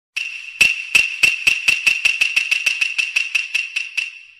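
A small hard object bouncing and ringing: about twenty impacts come faster and faster and fade out, over a steady high ringing tone.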